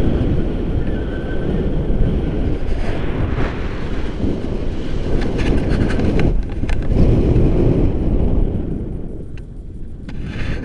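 Wind buffeting the microphone of a camera flying with a tandem paraglider: a heavy, fluctuating low rumble that eases off somewhat near the end.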